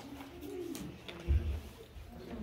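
Faint, low murmured voice sounds, like a low hum, with a soft low thump a little past halfway.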